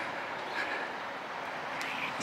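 Steady outdoor background noise, a faint even hiss with no distinct events.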